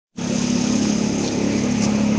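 A steady engine hum that cuts in just after the start and runs on evenly.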